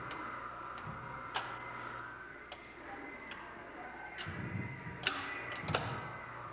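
Motorised gyroscope of a kinetic sculpture in motion: a faint steady whine with scattered, irregular clicks and knocks from its mechanism, and a low rumble joining in about four seconds in.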